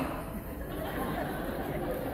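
Low chatter and murmur of an audience in a large hall, in a lull between amplified speech.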